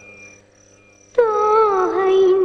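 A high, wavering wail starts suddenly about a second in and slides down in pitch before holding. It comes after a fading note and a brief lull.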